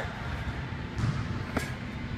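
Two punches landing on a Title heavy bag held by a coach, two short thuds about a second in and half a second apart, over a low gym background.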